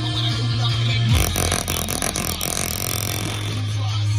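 A rap song played through a JBL Boombox at full volume in its low frequency mode, with deep steady bass notes. About a second in, the bass drops out for a couple of seconds, leaving a clicky stretch before the bass comes back.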